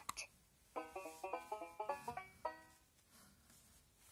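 Fisher-Price talking plush puppy toy playing a short electronic jingle of about a dozen quick plucked-sounding notes, set off by pressing the heart button on its chest.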